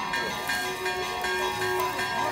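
Outdoor street-market ambience: several people's voices talking at once, over music with steady held tones.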